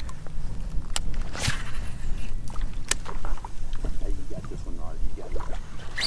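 Steady wind rumble on the microphone, with water lapping at a kayak hull and a few sharp clicks and knocks from the fishing gear, the clearest about a second in and about three seconds in.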